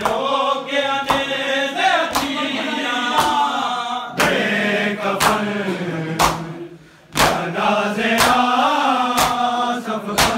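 A group of men chanting a noha (Shia lament) together, with matam: open hands striking bare chests in unison about once a second, keeping time with the recitation. The chant breaks briefly between lines while the strikes carry on.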